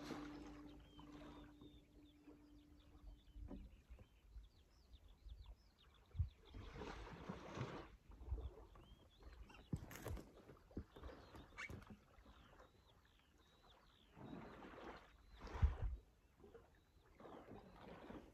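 The song's last guitar chord rings out and fades away over the first few seconds. After that come faint, high bird chirps, with a few short bursts of rustling and soft knocks.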